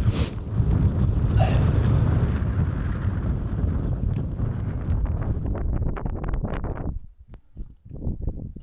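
Wind buffeting the microphone in a loud low rumble. It cuts off abruptly about seven seconds in, leaving lighter, intermittent gusts.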